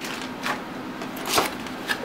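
Cardboard packaging being handled inside an open box: soft rustling with a few light clicks and knocks, the sharpest about one and a half seconds in.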